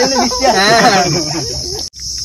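Steady, high-pitched drone of an insect chorus, with a man's voice over it for the first second and a half. All sound cuts out for a moment just before the end.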